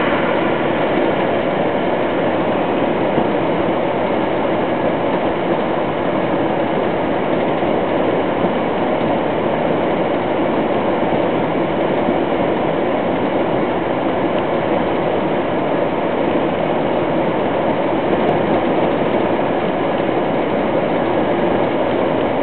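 Steady engine and road noise heard inside a truck's cab while driving.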